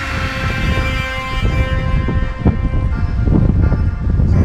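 Wind buffeting a bike-mounted camera's microphone while riding, a heavy rumble that grows louder, under steady held tones.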